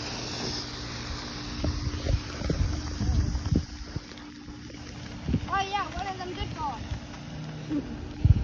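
Wind buffeting the microphone in gusts, over a faint steady low hum. About five and a half seconds in comes a short, high, wavering vocal sound.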